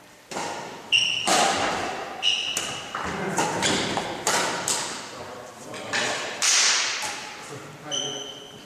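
Badminton rackets striking a shuttlecock back and forth in a fast doubles rally: a quick series of sharp hits, some with a short ringing ping, echoing in a large hall. Players' shoes on the wooden floor add thuds between the hits.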